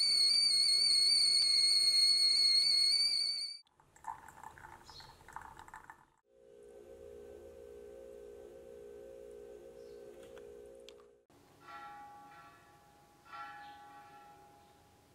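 Stainless steel stovetop whistling kettle whistling at the boil, one steady high whistle that cuts off sharply after about three and a half seconds. Quieter sounds follow: a steady low hum for several seconds, then two ringing, bell-like tones near the end.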